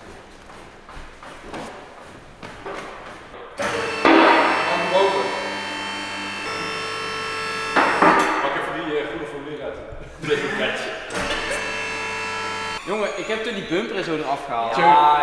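Electric-hydraulic power unit of a Wolf two-post car lift running, a steady hum while it raises a car: it starts about four seconds in, stops near eight seconds, and runs again from about ten to thirteen seconds. Men's voices are heard over it.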